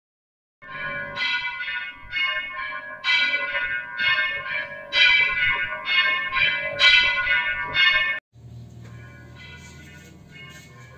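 Temple bells rung over and over, about two strikes a second, each strike ringing on into the next. The ringing cuts off suddenly a little after eight seconds, leaving a quieter steady low hum.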